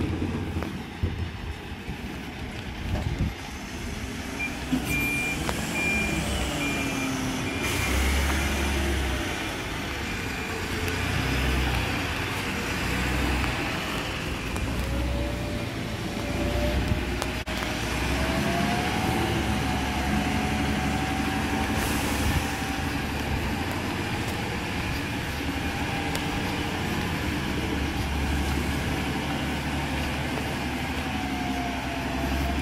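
Mercedes Econic refuse truck's engine running as it manoeuvres, with a reversing alarm beeping about twice a second for a few seconds early on. Later a whine rises and then holds steady as the truck moves off, with a short hiss of air about two-thirds of the way through.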